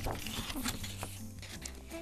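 Quiet background music, with soft snips of scissors cutting thick green card paper.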